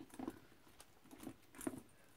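Faint scratching and a few light clicks of hands handling a handbag and fastening a keyring clip to it, with one slightly louder click near the end.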